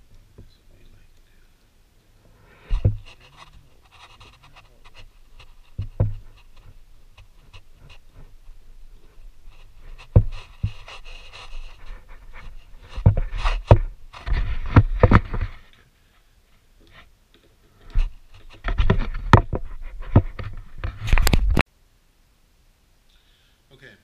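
Hand work fitting a steering damper mounting bracket to a motorcycle's top triple clamp: irregular small clicks, knocks and scrapes of metal parts and fasteners. There are bursts of close-up rubbing and rustling in the second half, the loudest near the end.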